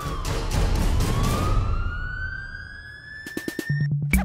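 A siren wailing, its pitch sliding down and then slowly climbing back up over a low rumble. Near the end a quick run of clicks and a deep bass note cut in as music begins.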